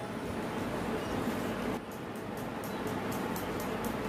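A spoon beating butter in a stainless-steel mixing bowl, scraping and clinking against the metal. In the second half the strokes fall into a quick, even rhythm of about five a second.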